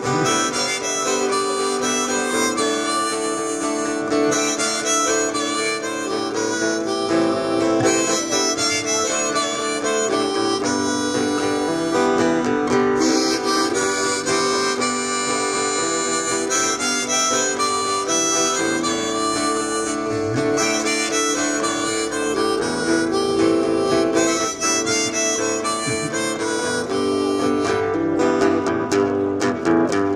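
Harmonica playing a sustained chordal melody over a strummed acoustic guitar, a harmonica-and-guitar instrumental passage.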